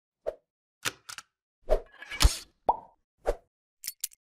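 Animated-intro sound effects: a string of about eight short pops with silence between them, one every half second or so. The loudest, just past the halfway point, is longer and has a deep thud under it, and the one right after it carries a brief beep.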